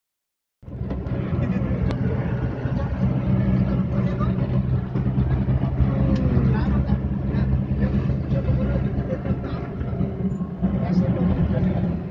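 Steady drone of a vehicle's engine and road noise heard from inside the moving vehicle, starting about half a second in and holding at an even low hum.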